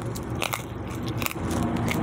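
McDonald's french fries being bitten and chewed close to the microphone, with a few sharp crunches.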